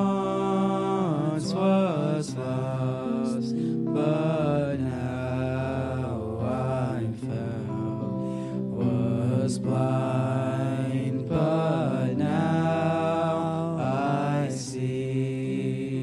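Two young men singing a gospel worship song through microphones, backed by electric guitar and violin.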